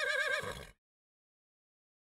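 A horse whinnying: one quavering call with a trembling pitch that cuts off suddenly about three quarters of a second in.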